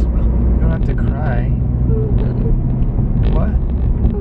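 Steady low rumble of a car driving, heard from inside the cabin, with a woman's tearful, wavering voice breaking in briefly about a second in and again near the end.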